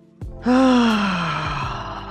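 A woman's long, breathy voiced sigh on the out-breath, falling slowly in pitch, over soft background music.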